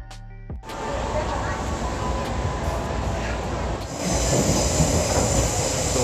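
Steady noise inside a commuter train carriage, growing louder about four seconds in. It cuts in suddenly under a second in, where background music stops.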